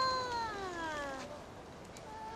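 A child's long, high-pitched whine that starts right away and falls steadily in pitch for just over a second, then a fainter, steadier high note near the end.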